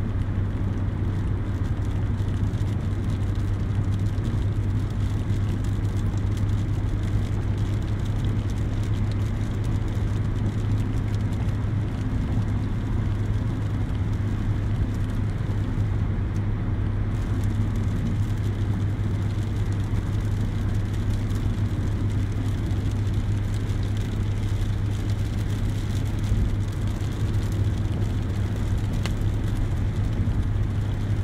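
Steady road and engine noise heard from inside a moving car's cabin, a constant low drone with a haze of tyre noise, unchanging throughout.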